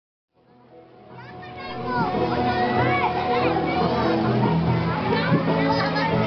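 A group of young children chattering and calling out excitedly over background music with long held notes, the sound fading in over the first two seconds.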